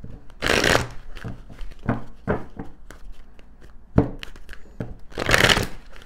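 A tarot deck shuffled by hand: two rushing flutters of cards, one about half a second in and one near the end, with soft knocks of the cards against the table between them.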